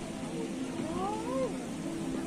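Background chatter of people's voices, with one high vocal call gliding up and then back down about a second in.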